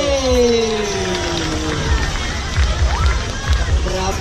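Music over a PA system with low thudding bass, under crowd noise. A long falling pitched tone fades out over the first couple of seconds.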